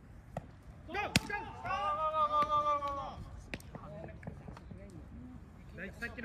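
A baseball bat strikes a pitched ball with a sharp crack about a second in, sending up a high fly ball. The crack is followed by one long, loud shout, then scattered voices.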